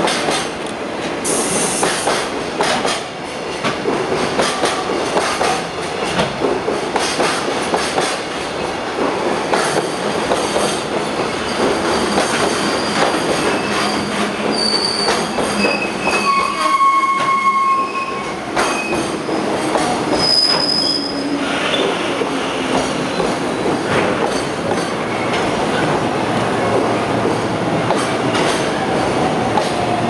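A long freight train's container wagons rolling past as it brakes into the station: a steady rumble with wheels clicking over rail joints, and several short high-pitched squeals from wheels and brakes around the middle.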